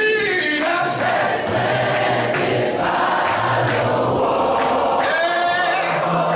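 A church congregation singing a hymn together in unaccompanied voices, with long held notes and a strong low men's part under the higher voices.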